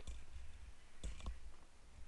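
Handling noise: a low rumble, then two light clicks about a second in, as a handheld calculator is lifted away.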